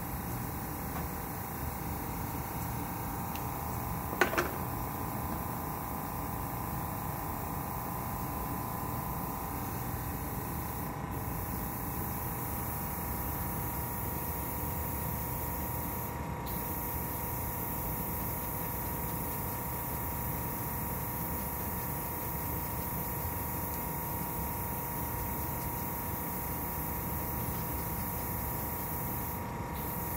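Steady mechanical hiss and hum of running machinery in the room, with a faint steady whine. A brief sharp double knock about four seconds in.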